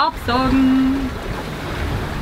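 Steady rush of wind and breaking waves around a sailboat under way at sea, with wind buffeting the microphone. A voice lets out one drawn-out, steady-pitched call about half a second in.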